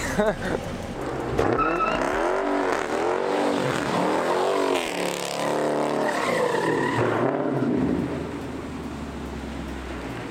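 Dodge Charger's built 392 Hemi V8, stroked to 426, revving up and falling back over and over as it spins its rear tyres doing donuts, with tyre noise under it. The revs rise and fall about once a second from a second and a half in, then settle into a steadier, lower drone near the end.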